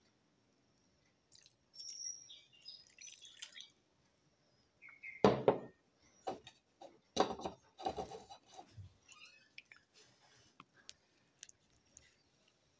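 Vinegar trickling faintly as it is poured over sliced jellyfish in a ceramic bowl. A sharp knock comes about five seconds in, then a run of lighter knocks and clinks.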